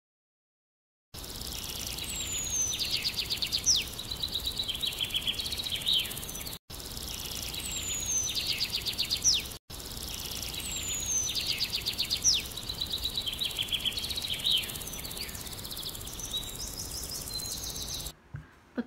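A songbird singing the same phrase over and over after about a second of silence. Each phrase is a high falling whistle, then a fast trill and some buzzy notes, and it comes back every few seconds. The song breaks off for an instant twice.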